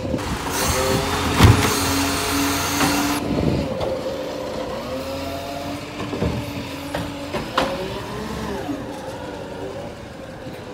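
Side-loader garbage truck's engine running while its hydraulic bin-lifting arm works, with a whine that glides up and down in pitch. A loud hiss in the first three seconds carries a heavy knock about a second and a half in, and another sharp knock comes about three quarters of the way through as the arm handles a bin.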